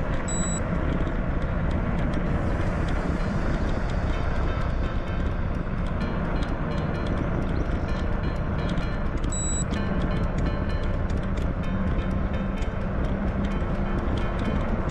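Steady wind rumble on the camera microphone, with tyre noise from an e-bike rolling along a tarmac road.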